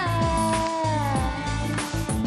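A female pop singer holds one long sung note that slides slowly down in pitch and breaks off near the end, over a pop backing track with a steady beat.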